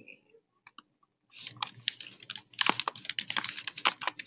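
Typing on a computer keyboard: a couple of lone key clicks under a second in, then a quick run of keystrokes from about a second and a half in.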